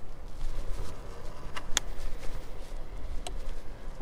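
Riding noise of an Inmotion Climber electric scooter on the move: a steady low wind rumble on the microphone with wheel noise, and two sharp clicks, one a little before halfway and one near the end.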